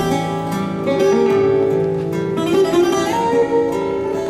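Fado instrumental introduction on plucked guitars: a Portuguese guitar's bright melody over an acoustic guitar's strummed chords.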